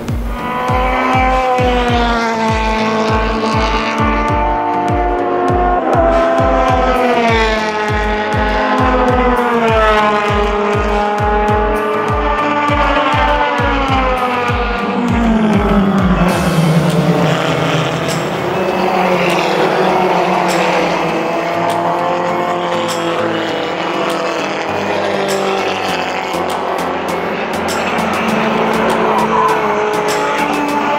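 Open-wheel formula race car engines revving, the pitch rising and falling again and again through the gears, mixed with background music with a steady beat that cuts off about halfway through.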